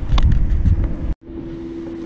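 Wind buffeting the camera microphone in a loud low rumble, cut off suddenly about a second in and followed by a quieter steady low hum.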